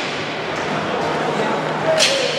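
Steady ice-rink ambience: indistinct voices over an even background hiss, with no single clear sound standing out.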